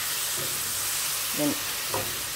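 Shrimp frying in melted butter and garlic in a pan, a steady sizzle, while being stirred with a spoon.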